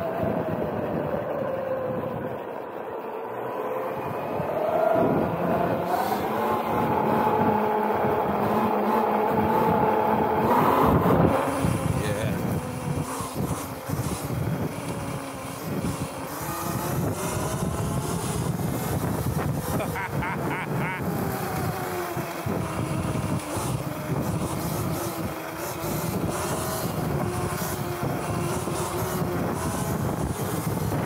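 Whine of the Sotion aftermarket electric motor on a Surron electric dirt bike under riding load, its pitch rising and falling with speed. It climbs steeply about ten seconds in and drops back just after, with wind and road noise underneath.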